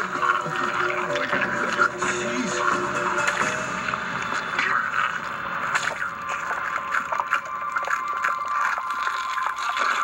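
Horror-film soundtrack heard through a TV's speaker: a man groaning over a sustained, tense music score, with many small clicks and crackles throughout.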